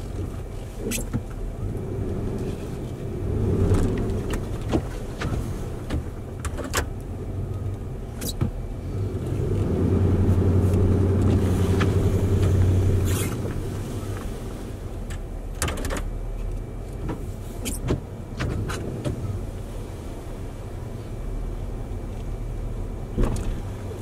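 Plow truck's engine heard from inside the cab, rising in level twice under load, briefly about three seconds in and longer for a few seconds around the middle. Scattered short clicks and knocks throughout.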